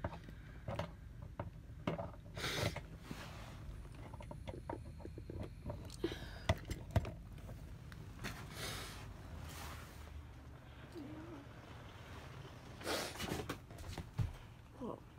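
Handling noise from a phone being carried and moved around by hand: repeated rustling and small knocks and clicks over a steady low hum.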